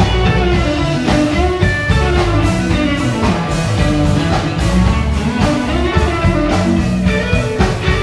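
A blues band playing live: electric guitar over bass and a drum kit, steady and loud.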